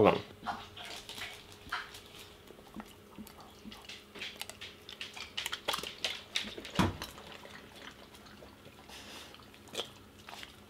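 Siberian huskies licking wet homemade dog food off a spoon: scattered wet smacks and clicks, with one louder knock a little before seven seconds in.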